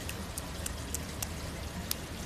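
Light water drips and small splashes at the edge of a swimming pool, about six sharp ticks in two seconds, over a steady low hum.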